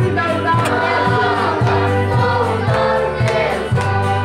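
A group of men and women singing a gospel song together to guitar accompaniment, with hand clapping on the beat.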